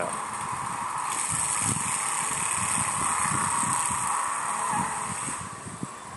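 Rat rod's engine running as the car pulls away and drives off, swelling about a second in and fading near the end, heard played back through a screen's speaker.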